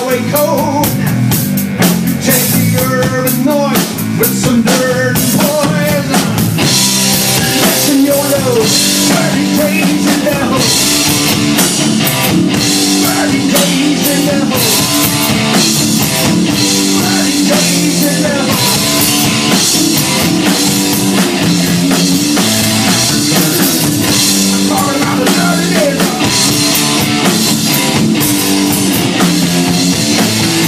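Live blues-rock band in an instrumental break: an electric guitar solo with bent notes over a drum kit and low bass notes. The cymbals get louder about six seconds in.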